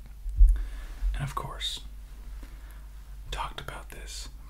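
A man whispering softly in short phrases, with one low thump about half a second in.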